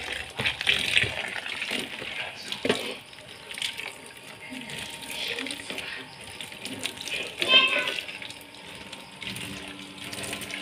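Kitchen tap running into a stainless steel sink, the stream splashing on a plastic basin as it is rinsed. A brief voice sounds about three-quarters of the way through.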